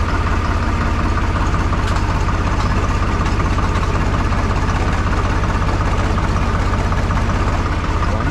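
Farm tractor's diesel engine running steadily at idle, a constant low pulsing beat.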